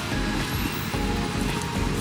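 Background music with held notes that change about every half second, over a low, steady rumbling noise.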